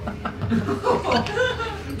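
A live audience chuckling and laughing briefly at a punchline.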